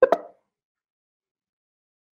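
A brief double pop: two quick knocks within about a third of a second at the very start.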